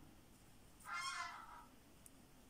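A single short animal call about a second in, lasting under a second, with a clear pitch.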